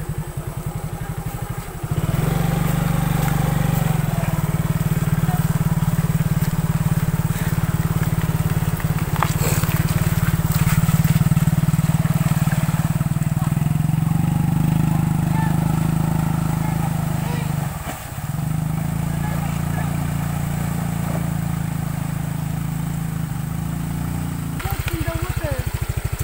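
Small motor scooter engine running. It pulses unevenly at low speed at the start and near the end, and runs as a steady drone at higher speed through the middle, with a short dip about two-thirds of the way through.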